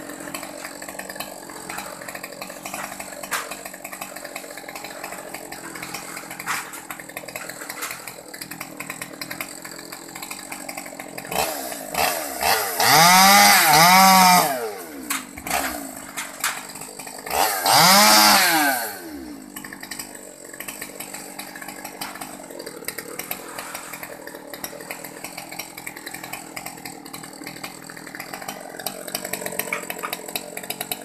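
Small top-handle two-stroke chainsaw (a Stihl 020T) idling, revved up twice to full throttle to cut a mango limb, first for about three seconds near the middle and again for about two seconds shortly after, the pitch rising and falling back to idle each time.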